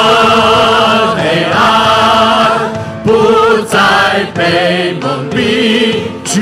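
A worship team singing a Mandarin praise song with a live band, voices holding long sustained notes.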